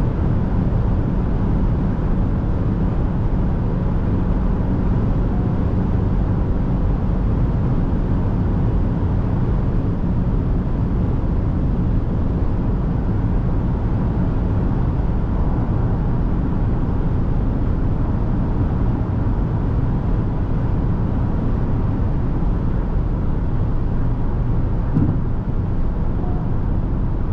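Steady interior noise of a Chery Tiggo 8 Pro Max cruising at about 200 km/h: a deep, even rush of tyre and wind noise as the car slows from about 216 to 192 km/h, with one brief faint knock near the end.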